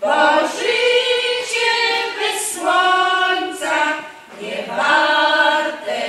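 A women's folk choir singing a Polish song in unaccompanied chorus, in sung phrases with a short break for breath about four seconds in.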